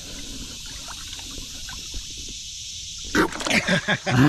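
Faint water splashing over a steady high hiss as a hand probes a hole under a rock in shallow creek water. About three seconds in, a sudden burst of loud laughter from several people breaks in.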